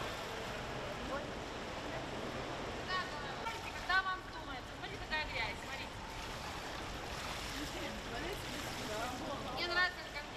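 Indoor swimming pool ambience: a steady wash of water and hall noise, with a few short, indistinct bursts of voices, about three, four and five seconds in and again near the end.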